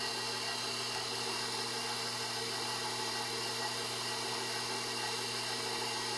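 KitchenAid stand mixer running steadily with its dough hook, turning a dry, crumbly flour-and-oil dough in a steel bowl: an even motor hum that holds one pitch throughout.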